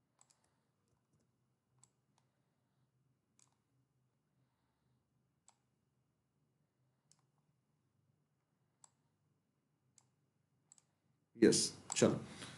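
Faint, sparse single clicks of a computer mouse, about one every one to two seconds, over a quiet room with a faint low hum. Speech starts near the end.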